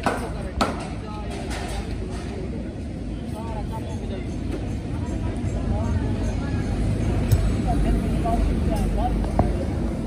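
Voices talking in the background over a low rumble that grows louder in the second half, with a few sharp knocks.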